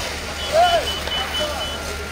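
Rapid high-pitched electronic beeping, about five beeps a second, which stops shortly before the end. A voice calls out once about half a second in, the loudest sound, over steady background noise.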